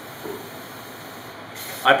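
Steady airy rush of breath blown through a narrow glass tube into a rubber balloon, inflating it; the blowing stops shortly before the end, followed by a quick breath.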